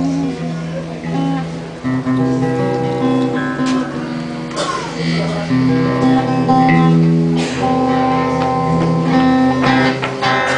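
Acoustic guitar strumming a slow chord progression, each chord held and ringing for a second or two before the next.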